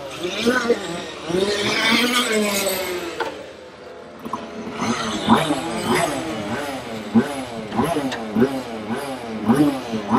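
People talking; the words are not clear enough to make out.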